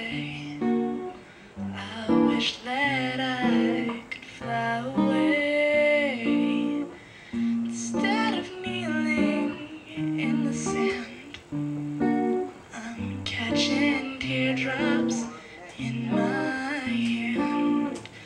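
Acoustic guitar playing picked chords, with a woman singing over it in a wavering, held voice.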